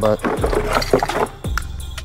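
Cardboard box and packaging rustling and scraping as a sander is lifted out of it, over background music.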